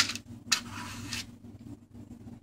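Kitchen handling sounds while pouring muffin batter: a sharp knock of the plastic measuring cup against the muffin pan at the start, then a brief scraping rustle about half a second in. A low steady hum runs underneath.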